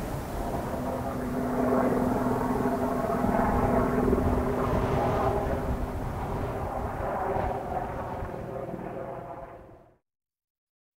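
Steady engine drone, several steady pitches over a low rumble, swelling a little about two seconds in and fading out at the end.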